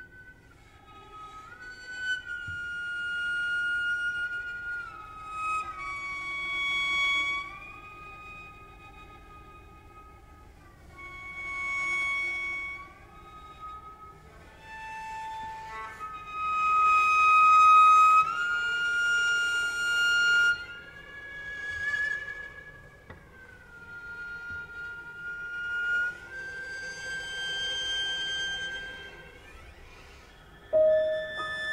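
Slow chamber music: a line of long held high notes that step from pitch to pitch, in phrases of a few seconds that swell and fall back between them.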